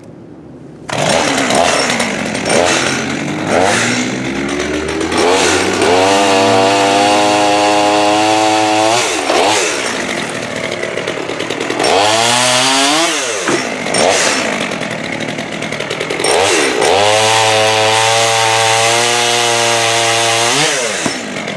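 Holzfforma two-stroke chainsaw, a Stihl clone, blipped a couple of times and then revved up and held at high revs three times, dropping back to idle in between. Near the end it runs at high revs while cutting into maple wood.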